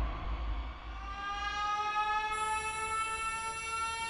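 A single long pitched tone with many overtones, rising slowly and slightly in pitch over a deep low rumble, from an animated film's soundtrack.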